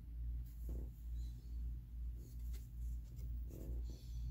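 Faint rustles and light taps of cardboard baseball cards being turned over and set down on a cloth, over a steady low hum that swells and fades about one and a half times a second.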